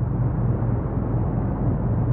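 A steady, deep rumble, dull and muffled, with its weight in the low bass.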